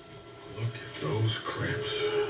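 Quiet for about the first second, then a man speaking in a low voice: dialogue from the TV episode.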